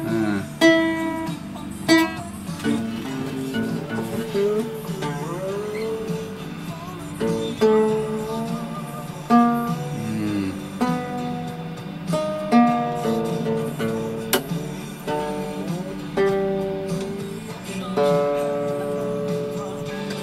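Nylon-strung acoustic guitar being tuned: single strings plucked one at a time every second or two, some notes sliding up or down in pitch as the tuning peg is turned.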